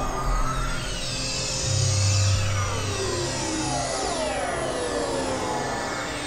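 Experimental electronic synthesizer music from a Novation Supernova II and Korg microKorg XL. Steady drones run under many falling pitch sweeps, and a low bass tone swells about two seconds in.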